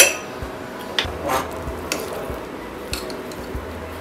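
A spatula knocking and scraping a few times against an aluminium pressure cooker as cooked pulao rice is stirred and fluffed: several short light clicks with a brief scrape.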